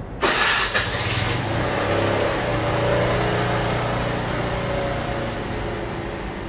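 Xiaomi handheld electric air pump, casing open, switching on just after the start with a brief hiss and then running steadily, its motor and piston compressor humming. This is a test run with a pressure sensor borrowed from another unit to see whether the E8 sensor error clears.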